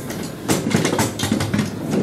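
Irregular rustling and clattering handling noise, papers and objects moved about on the table near the microphone, starting about half a second in.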